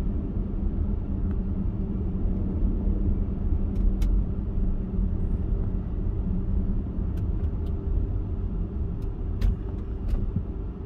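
Car driving slowly, heard from inside the cabin: a steady low rumble of road and engine noise with a faint hum, and a few brief faint clicks about four, seven and nine seconds in.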